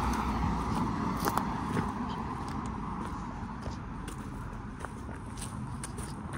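A car driving past on the road and moving away, its tyre and engine noise fading over a few seconds, with faint footsteps on grass.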